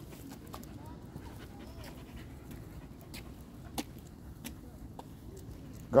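Pit bull panting while walking on a leash, with a few light clicks in the middle.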